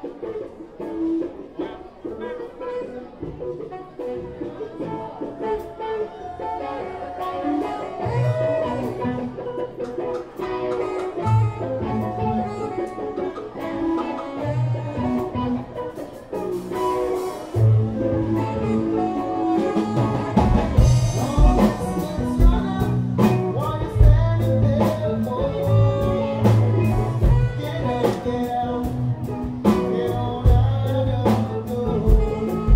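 A live band playing an instrumental jam: guitars over bass, with drums and percussion. It starts sparse, deep low notes join about eight seconds in, and the beat grows fuller and louder through the second half.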